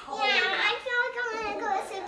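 A young child's voice talking, high-pitched and loud.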